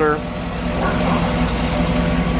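2008 Cadillac Escalade ESV's 6.2-liter V8 idling steadily under the open hood, a good running motor.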